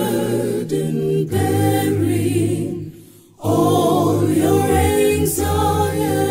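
Mixed male and female voices singing a slow hymn a cappella in close harmony, holding long chords. There is a short break a little after halfway before the singing resumes.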